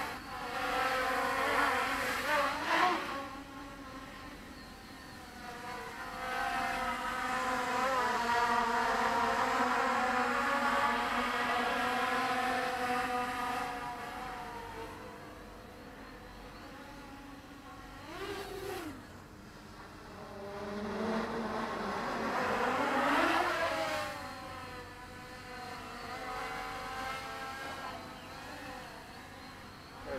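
Quadcopter with Avroto 770kv brushless motors on a 4S battery, its propellers whining in flight. The pitch and loudness rise and fall with throttle, loudest from about a fifth to nearly half of the way in and again past two-thirds, with quick pitch sweeps as it passes close.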